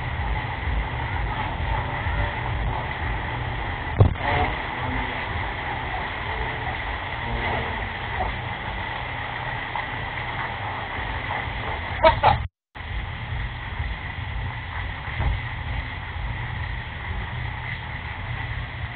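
Jeep Wrangler idling, a steady low rumble heard through a security camera's narrow-band microphone, with a faint steady whine over it. A sharp knock comes about four seconds in and a short clatter near twelve seconds, after which the sound drops out for a moment.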